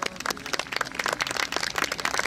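Audience applauding: a dense, irregular patter of hand claps.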